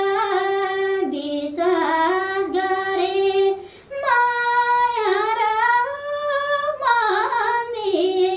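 A woman singing unaccompanied, holding long notes with quick ornamental turns between them, with a short pause for breath about four seconds in.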